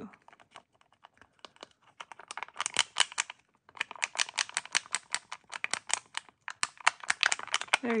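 Metal dotting tool stirring epoxy resin in a small plastic mixing cup, clicking rapidly against the cup wall as white is blended into blue resin. The clicking comes several times a second, starting about two seconds in, with a short break midway.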